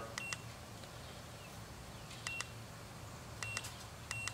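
A TOPDON ArtiLink 201 OBD2 code reader beeps at each press of its down key while scrolling a menu. There are three short high-pitched beeps, a second or more apart, each with a faint click of the key.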